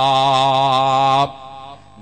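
A man's voice chanting one long, drawn-out melodic note with a slight waver, which breaks off a little past a second in.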